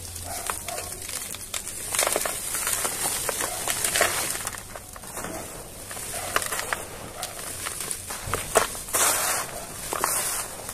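Dry, dusty dirt with small hard lumps poured by hand into a bucket and crumbled between the fingers: a dry hiss full of small clicks, swelling louder several times as fresh handfuls fall.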